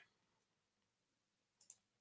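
Near silence: faint room tone, with one brief, faint click near the end.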